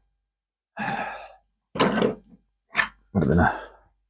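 A man's voice: a breathy sigh about a second in, followed by a couple of short mumbled vocal sounds.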